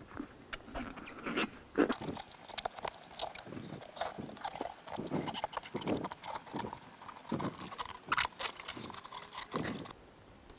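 Irregular rubbing and light knocks as a rubber inner tube is pushed by hand into a small lawn-tractor tire on a manual tire changer, and its right-angled valve stem is worked into place at the rim.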